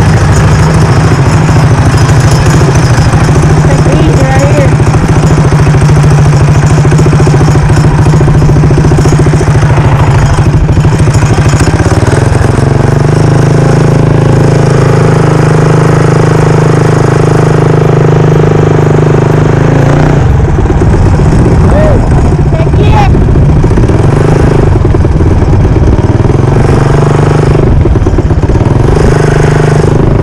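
Modified Predator 212 single-cylinder four-stroke engine on a mini bike, running loud under way, its pitch rising and falling several times with the throttle.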